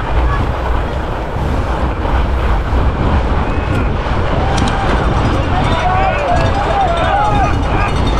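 Steady wind rumble on an action camera's microphone as a fat bike rolls over groomed snow, with spectators shouting and cheering over it. The shouting grows thicker in the second half.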